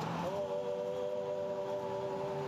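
Singing: several voices holding a sustained chord, which moves to a new chord just after the start and is then held steady.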